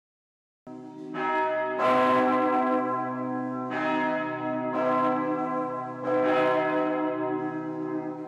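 Church bells ringing: about five strikes at uneven intervals, each ringing on and overlapping the next.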